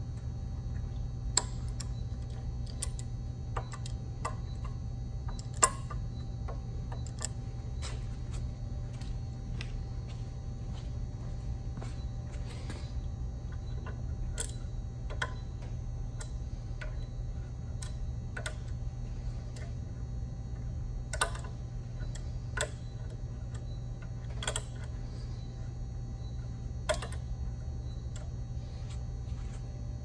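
Scattered sharp metallic clicks and clinks, with the loudest two near the start, from a wrench and valve parts handled on an air compressor pump head. A steady low hum runs underneath.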